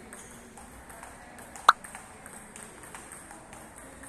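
Table tennis ball in play: faint ticks of the ball on bats and table, with one sharp, ringing hit that stands out loudly about a second and a half in.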